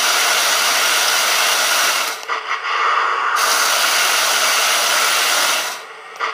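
RC tank's twin electric drive motors and plastic gearboxes running at full throttle, driving the tracks. The higher part of the sound drops out briefly about two seconds in, and the drive stops just before the end.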